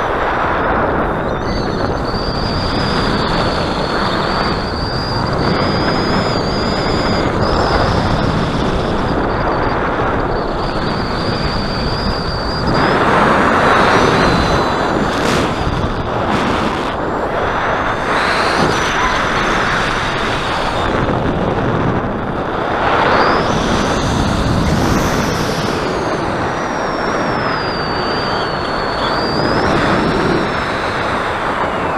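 Wind rushing over the microphone during a paraglider's descent, a steady loud roar that swells now and then. A thin high whistle wavers and glides in pitch above it for long stretches.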